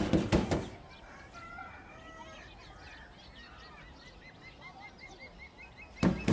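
A hand banging on a door several times in quick succession, stopping after about half a second. Then faint birds chirping, with a quick run of repeated chirps near the end. The banging starts again right at the end.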